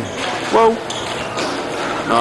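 Sounds of a roller hockey game in progress: a short voice, most likely a player's shout, about half a second in, with knocks of sticks and puck over the general noise of the rink.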